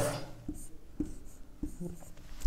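Dry-erase marker writing on a whiteboard: a few short, faint strokes.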